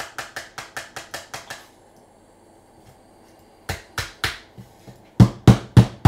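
Hard plastic trading-card cases clicking against each other in a quick run of about seven clicks a second, then, after a pause of about two seconds, a few more clicks and a run of louder knocks near the end as a case is tapped against the table.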